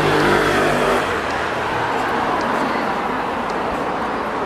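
A motor vehicle's engine hum that stops about a second in, giving way to a steady rush of noise like passing traffic.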